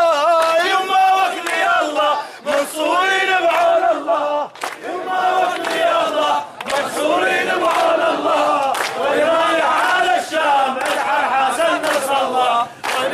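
A lead chanter and a crowd of men chanting Arabic protest slogans, with hand-clapping.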